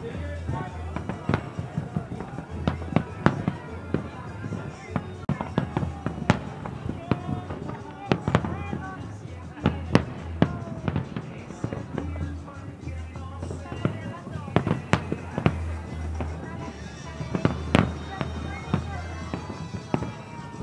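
Aerial fireworks shells bursting in a rapid, irregular string of sharp bangs, over a low steady hum that starts and stops in blocks.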